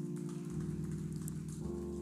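Soft background music of held keyboard chords, the chord changing about half a second in and again near the end.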